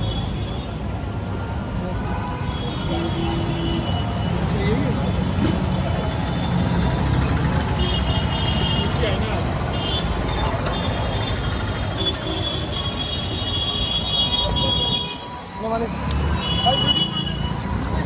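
Busy street traffic: a steady rumble of engines with vehicle horns tooting several times through it, and voices of passers-by mixed in.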